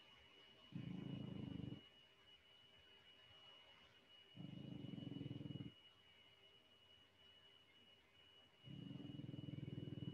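A sleeping dog snoring: three low, buzzing breaths about four seconds apart. A faint steady high whine runs underneath.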